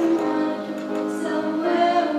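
High school choir singing sustained notes that step from pitch to pitch.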